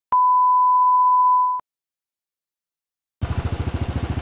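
A steady, high-pitched electronic beep, a single pure tone lasting about a second and a half, then silence. Near the end a Royal Enfield single-cylinder motorcycle engine cuts in, running with an even pulsing beat.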